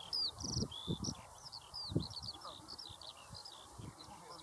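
Small birds chirping, a steady stream of short high calls, many sliding downward, with a quick trill near the start. A few low dull thuds sound underneath.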